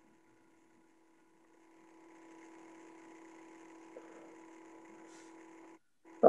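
Near silence, then about two seconds in a faint steady hum from an open microphone comes in and cuts off just before the end.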